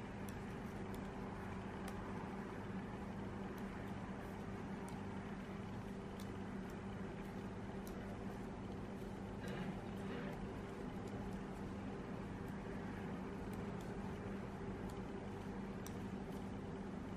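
Steady low electrical hum over faint room noise, with soft irregular clicks of knitting needles as stitches are worked.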